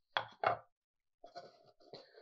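Two light knocks as thin wooden control-cover blanks are set down on guitar bodies, then a fainter scraping as the wood is slid across the wood.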